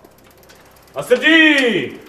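A man's long, drawn-out street-vendor cry hawking sardines, starting about a second in, its pitch rising and then falling away.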